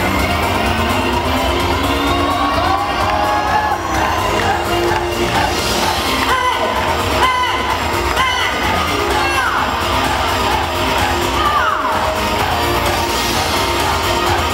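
Loud, steady pop music with a crowd cheering and whooping over it; several high cries stand out near the middle.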